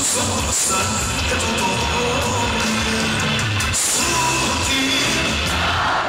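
Loud live band music in Serbian pop-folk style, with a steady pulsing bass under held melodic tones.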